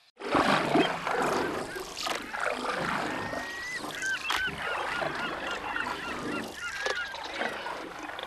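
Gulls calling again and again in short, curving cries over a steady wash of wind and water noise, which is loudest in the first second.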